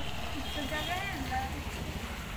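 Outdoor background din: faint distant voices over a low, steady rumble.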